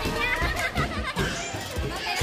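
Children playing and people chattering, with music in the background.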